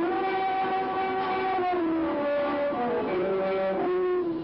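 Music track of an old film playing on a television: held, brass-like notes sounding together, moving to new pitches in slow steps.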